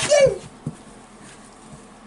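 A toddler's short breathy exclamation that falls in pitch, followed by a single light tap a moment later.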